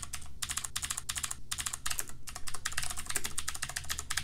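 Typing on a computer keyboard: a quick run of keystrokes with a short break about one and a half seconds in.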